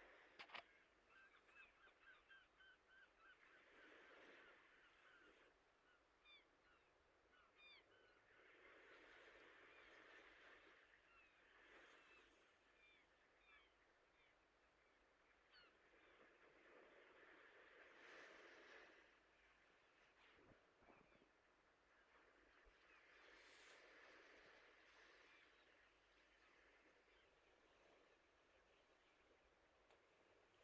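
Near silence with faint bird calls in the background: scattered short chirps and a few softer, longer sounds every few seconds.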